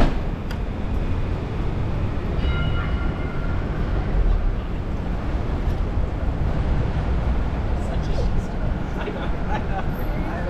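Busy city street ambience: a steady low rumble of traffic with pedestrians' voices, and a few brief high tones about two and a half seconds in.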